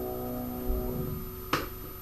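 Upright piano's final chord ringing and fading, then damped off with a soft low thump just under a second in. A single sharp click follows about half a second later.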